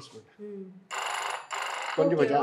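Old-style telephone bells ringing in a double ring: two short rings close together about a second in.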